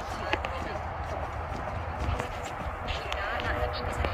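Chest compressions on a CPR training manikin: faint clicks and thumps, under a steady low wind rumble on the microphone.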